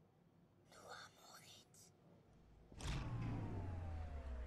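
Horror-trailer sound design: a faint whisper about a second in, then near the end a sudden deep boom that holds as a low rumble, with a thin tone sliding slowly downward over it.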